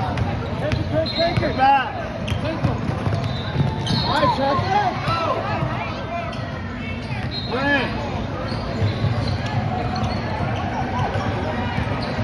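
Basketball being dribbled on a hardwood gym floor while sneakers squeak in short, repeated chirps as players run the court, with voices in the background throughout.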